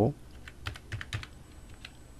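Computer keyboard being typed on: an irregular run of light key clicks as an IP address is entered.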